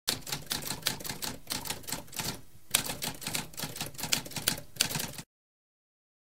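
Typewriter keys clacking in a rapid, uneven run of keystrokes, with a brief pause about halfway through, stopping suddenly after about five seconds.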